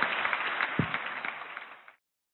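Audience applause in a large hall, fading steadily and cut off to silence near the end.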